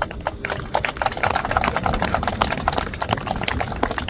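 Applause: many people clapping at once, a dense patter that is thickest in the middle and thins out near the end.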